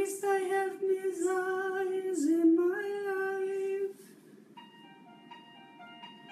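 A singing voice holds one long high note over music. The pitch dips and climbs back about two seconds in, and the note stops at about four seconds. Softer instrumental accompaniment carries on after it.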